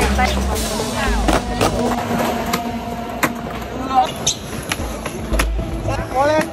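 Skateboard wheels rolling on smooth concrete in a low rumble, broken by several sharp clacks of the board popping and landing during tricks.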